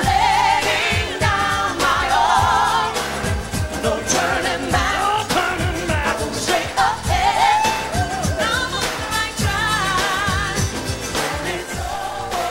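Live pop song sung by a group of male and female singers, the voices wavering with vibrato, over a band with a steady drum beat.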